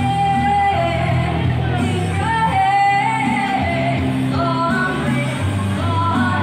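Woman singing long, held notes that bend in pitch, amplified through a microphone and portable speaker, over a rock backing track.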